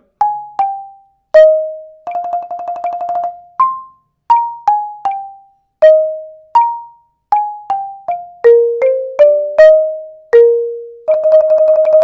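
Marimba played with yarn mallets: a phrase of single struck notes stepping up and down, each ringing briefly. The player rolls on one held note about two seconds in and again near the end.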